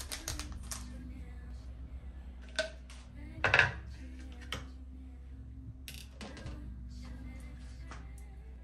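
Background music under the clatter of kitchen things being set down on a granite counter: a few light clinks in the first second, a louder wooden knock about three and a half seconds in as a wooden cutting board is put down, then a few lighter clicks.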